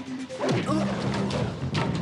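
Action-cartoon fight soundtrack: music with a sudden crash of impact sound effects about half a second in, a short vocal grunt right after, and further hits near the end as a character is knocked to the floor.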